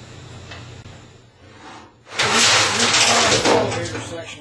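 A power tool running loudly for about a second and a half, starting about two seconds in, as nuts and bolts are run onto the flange of a shot blast machine's elevator head section.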